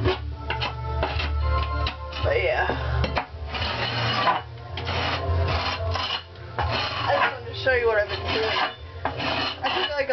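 Hand scraper rasping popcorn ceiling texture off in a series of strokes, each lasting roughly half a second to a second.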